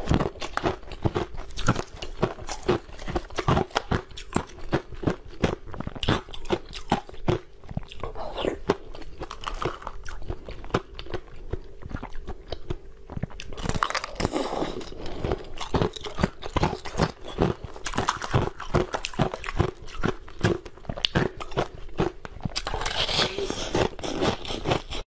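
Ice being bitten and crunched in the mouth close to the microphone: dense, irregular cracks and crunches of breaking ice with chewing between bites.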